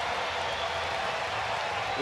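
Baseball stadium crowd cheering and applauding steadily, a home crowd reacting to a game-tying hit.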